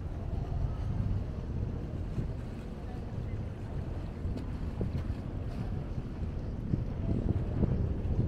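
Wind rumbling on the microphone over open harbour water, gusting stronger near the end.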